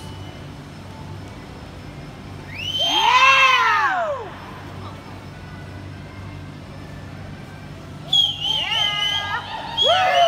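A spectator gives a loud whoop that rises and falls, about three seconds in. More high yelling and cheering starts about two seconds before the end.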